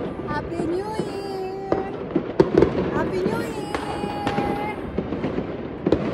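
New Year's fireworks and firecrackers going off around the neighbourhood: many scattered sharp bangs and cracks, the loudest a little over two seconds in.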